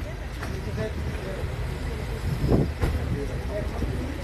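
Steady low rumble of a vehicle engine and street traffic, with faint voices talking in the background and one brief louder sound about two and a half seconds in.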